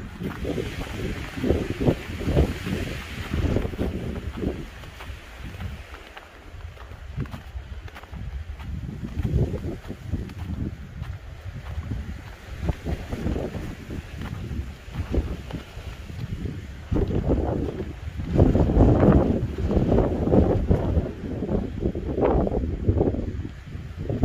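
Wind gusting across the microphone in uneven, rumbling buffets, strongest in the last several seconds.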